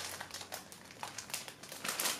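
Plastic packet of pre-stretched braiding hair being handled, its wrapper crinkling in a run of short irregular clicks.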